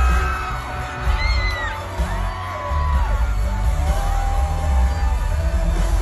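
Live concert music with a heavy, pulsing bass, recorded from the audience, with long held high notes over it.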